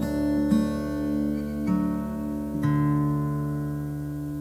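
Acoustic guitar music played slowly: about four plucked notes or chords, each left to ring out and fade.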